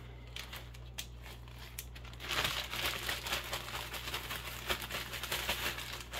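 Zip-top plastic bag crinkling as it is handled with a few light rustles. About two seconds in it turns to dense, continuous crackling as the bag is shaken with chicken drumsticks and dry seasoning inside.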